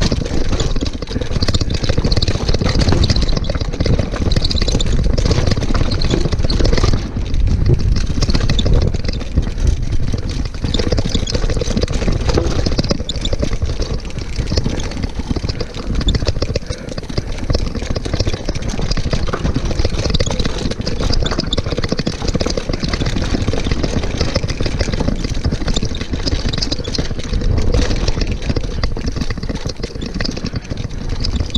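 Mountain bike riding fast down a rough dirt downhill trail: steady wind rush and rumble on the rider's camera microphone, with the bike's rattling and clattering over rocks and ruts.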